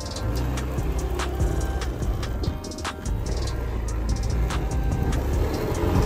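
Low rumble of a scooter being ridden on the road, under background music with a steady beat.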